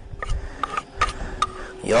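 A metal utensil scraping and clinking against a frying pan and plate as pasta is lifted and served, about four light clinks with a brief ring.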